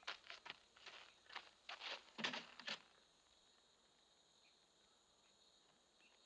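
Boots walking on a dry dirt yard: an uneven run of faint footsteps for about three seconds, then near silence.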